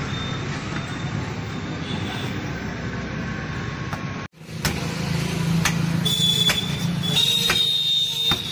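Cleaver chopping meat on a wooden log block: a handful of sharp chops, more of them in the second half. Under them is a steady low rumble of street traffic, with a brief dropout just past four seconds.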